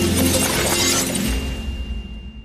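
Production-logo sting: a noisy sound-effect hit over a deep low rumble and music, dying away. A thin high ringing tone comes in about halfway through.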